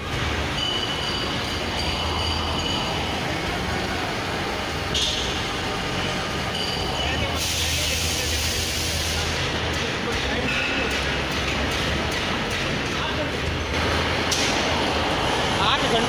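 Steady factory-workshop din: a constant low machinery hum under a wash of noise, with indistinct voices in the background.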